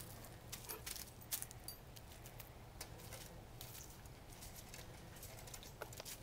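Faint, scattered light clicks and rustles of a dog and rabbits moving on wood-chip mulch against a wire exercise pen, with a brief faint squeak near the end.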